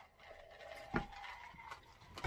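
Faint sounds of a man drinking from a mug, with one short, louder sound about a second in.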